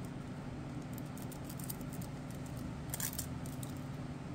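Faint handling sounds of nail transfer foil being rubbed onto a gel-coated nail tip and peeled away: scattered small ticks and rustles, with a brief louder crinkle about three seconds in, over a steady low room hum.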